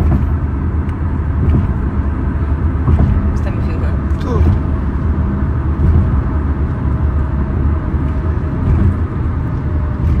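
Road noise inside a moving car: a steady low rumble of tyres and engine at highway speed.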